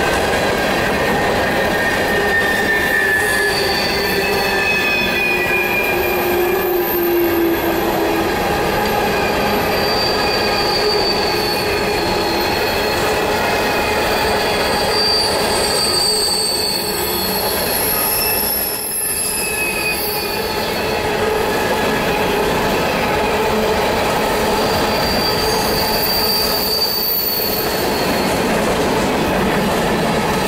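Empty coal hopper cars of a freight train rolling past, a steady rumble of steel wheels on rail with high wheel squeals that drift slowly in pitch and come and go.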